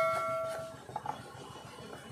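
A struck metal object ringing with several clear tones, fading out within the first second, followed by a few faint clicks of handling.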